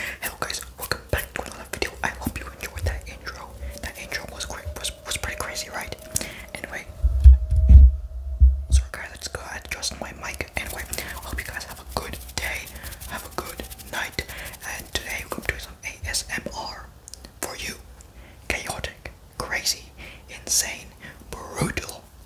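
ASMR whispering without clear words, mixed with many quick clicks throughout. A few heavy low thumps come about seven to nine seconds in and are the loudest sounds.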